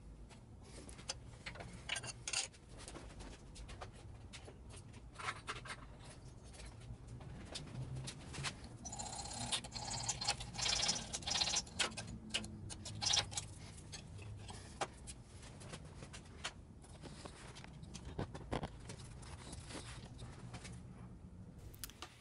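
Metal-on-metal handling of a combination bandsaw's steel vise and miter jaw: scattered light clicks and taps, with a stretch of scraping about halfway through, over a faint steady low hum.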